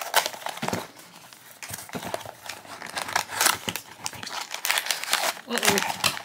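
Cardboard blind box being torn open by hand, its tear strip having failed, then a foil blind bag crinkling as it is pulled out. Irregular rustles and tears, busier after about two seconds.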